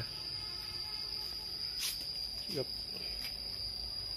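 A steady, high-pitched insect trill holding one unchanging pitch, with a faint sharp click just before the middle. A man's short 'À' comes a little past halfway.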